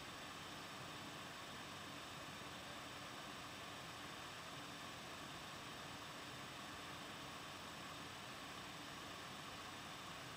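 Faint steady hiss of room tone and recording noise, even throughout, with no distinct sounds.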